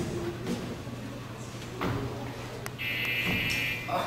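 An electric buzzer sounds once near the end, a steady buzzing tone held for about a second, preceded by a short click.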